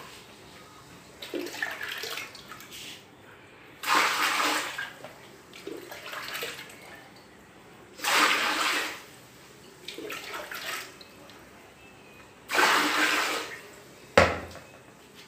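Water poured from a plastic jug into an iron kadhai onto flour, in three pours of about a second each, with fainter handling sounds between them.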